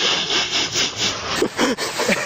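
Deep powder snow being churned and crunched in a quick run of short scraping strokes, about five a second, as a fallen skier thrashes in it. A voice calls out briefly near the end.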